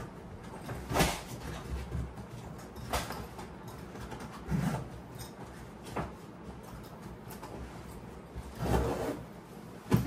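Handling of a packed fishing duffel bag: five or so short scrapes and knocks spread out over several seconds, with a longer rustle near the end, as the bag is closed up and shifted about.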